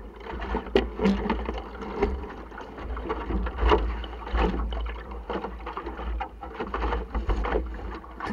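Water slapping and splashing against the hull of a small sailing dinghy under way, with a constant low rumble of wind buffeting the microphone and irregular knocks from the boat and crew moving.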